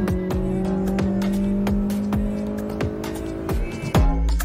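Suzuki Liana's four-cylinder engine pulling hard at high revs under acceleration, its drone rising slowly in pitch. Music with a steady beat plays over it.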